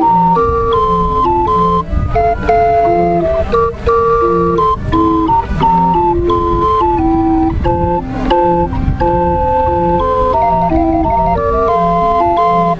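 Small hand-cranked box barrel organ (kistdraaiorgel) with wooden pipes playing a tune: a melody over a steady alternating bass-and-chord accompaniment, with a brief quick trill near the end.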